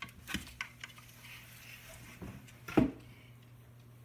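A wooden lattice pet gate knocked and rattled open, then a small dog's claws tapping on a hardwood floor as it walks, with one louder knock about three seconds in.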